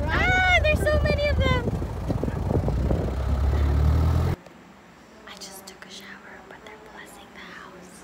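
A woman laughs over the low, steady rumble of a 4x4 driving a sandy off-road track. About four seconds in, the rumble cuts off, leaving a quiet room with faint whispering.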